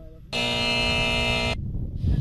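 Edited-in game-show buzzer sound effect: one harsh, steady buzz of just over a second that starts and stops abruptly, the wrong-answer buzzer marking a lost round.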